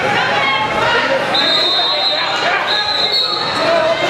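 Voices of spectators and coaches calling out around a wrestling mat in a gymnasium. Two long, high-pitched steady tones, each about a second long, sound a little after one second in and again near the end.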